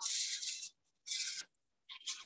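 Thin plastic rustling and crinkling in two short bursts as a clear plastic piping bag is handled.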